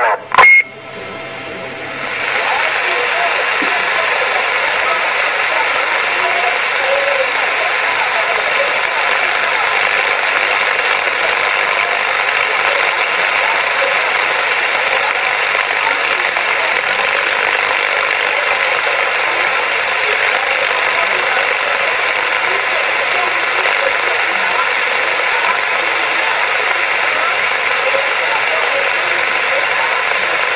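CB radio receiver on channel 27 with the squelch open, giving a steady loud hiss of static. A weak, distant station's voice is faintly heard under the noise. A short burst comes about half a second in, before the hiss settles.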